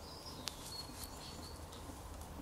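Faint handling sounds of metal-tipped knitting needles as a stitch is worked, with one sharp click about half a second in and a faint thin scrape of needle on needle after it.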